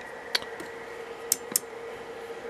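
A few sharp clicks, two of them close together about a second and a half in, over a faint steady tone.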